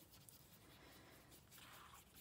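Near silence, with the faint brushing of a water brush's nylon tip across cardstock as water is laid down.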